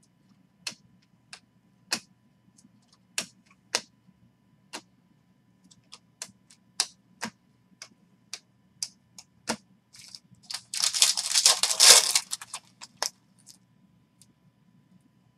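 2020 Topps Chrome baseball cards being flipped one at a time through a hand-held stack, each card giving a sharp click, irregularly, about one every half second to a second. Near the end comes a louder rustle, lasting about a second and a half, of cards sliding against each other.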